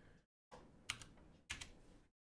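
Two faint keystrokes on a computer keyboard, about two-thirds of a second apart, over low room hiss.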